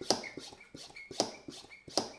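The built-in hand pump of a LifeSaver Jerrycan water filter being worked in quick, even strokes, about one every two-thirds of a second. Each stroke is a short sharp sound that trails off. The pumping pressurises the can to drive water through the filter.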